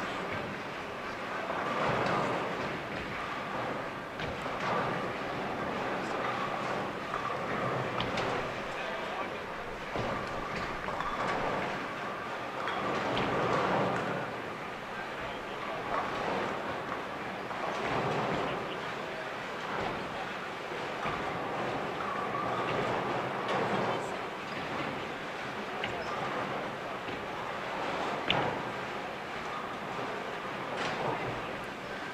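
Busy bowling centre: a steady murmur of many voices, with the rumble of bowling balls rolling down the lanes and a few sharp clatters of pins, the sharpest near the end.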